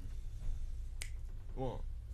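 A single finger snap about a second in, one of a run of evenly spaced snaps setting the tempo for a count-in, followed near the end by the spoken word "one".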